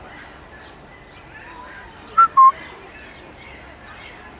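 A bird calls two short, loud, clear notes in quick succession about halfway through, the second slightly lower in pitch, over faint background bird chirping.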